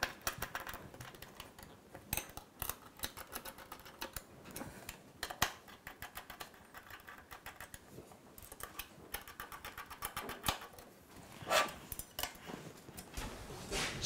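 Small screws being driven by hand with a screwdriver to fix metal angle brackets onto a precision triangle: a run of faint, irregular metal clicks and ticks, with a few louder knocks.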